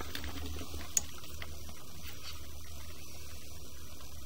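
Steady low electrical hum, of the kind picked up by a sewer inspection camera's recording system, with one faint click about a second in.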